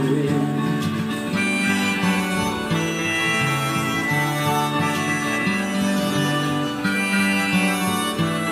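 Harmonica playing a melody over steadily strummed acoustic guitar: the folk-style instrumental break between sung verses of a karaoke backing track.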